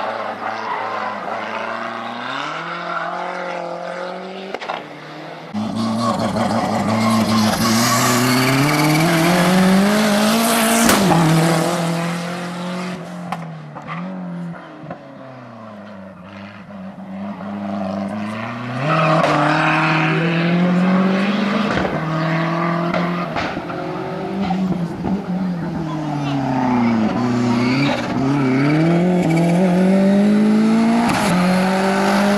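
Racing hatchback's engine revving hard, its pitch climbing and falling again and again as the car accelerates and brakes through a cone slalom, with some tyre squeal. It gets louder about five and a half seconds in and dips for a few seconds in the middle.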